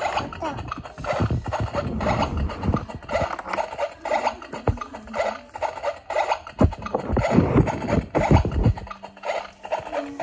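Clattering and scraping of small plastic toy-kitchen pieces handled by a toddler, with several heavy low knocks in the later half.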